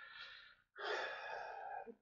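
A man's audible breathing: two breaths, the second starting under a second in and lasting about a second.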